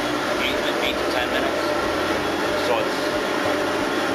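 Steady whir of blown air from a low-heat cylinder dryer, the step that dries the inside of a cylinder after its hydrostatic water test, with faint voices over it.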